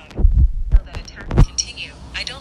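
A few heavy low thumps, coming in close pairs about a second apart, with faint voice-like sound between them.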